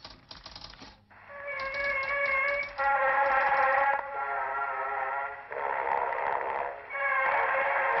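Typewriter keys clattering rapidly for about a second, then music of held chords that change every second or so.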